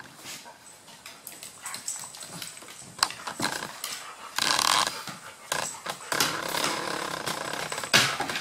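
Small and large dogs play-fighting on a wooden floor: scuffling, with scattered sharp clicks and a louder burst of noise about halfway through, busier over the last couple of seconds.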